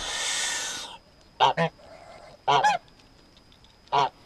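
Domestic white geese calling. A harsh, breathy, hiss-like call lasts about the first second, then two quick pairs of loud short honks, and one more honk at the very end.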